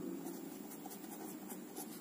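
Ballpoint pen writing on notebook paper: faint, short scratching strokes.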